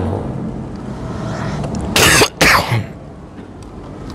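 A man coughs twice in quick succession, close to a handheld microphone, about two seconds in.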